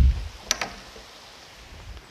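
A low thump, then two quick sharp clicks about half a second in, as a small part is picked up by hand, over a steady faint hiss.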